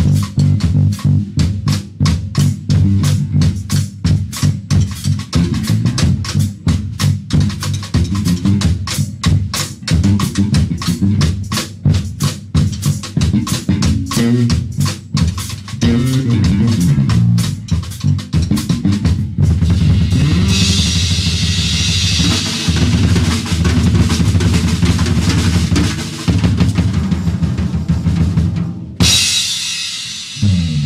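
Drum kit and electric bass guitar playing together: fast, busy drumming over moving bass notes, then a long cymbal wash over held bass notes from about two-thirds in, a brief break, and a final crash hit ringing out at the end.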